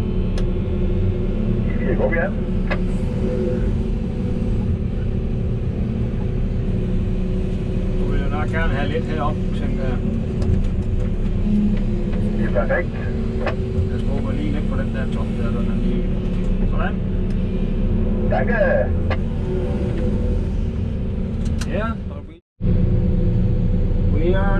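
Volvo EC380E excavator's diesel engine running steadily under load, heard from inside the cab, with a few short knocks. The sound drops out briefly near the end.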